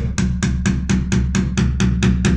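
A hammer tapping fast and evenly on a screwdriver wedged into a broken plastic plug in a wall tap fitting, to break the plug out: about six or seven strikes a second, with a low ring under the blows.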